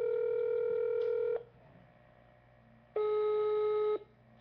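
Telephone ringback tone of an outgoing call ringing unanswered: a steady buzzing tone, a pause of about a second and a half, then another shorter tone near the end.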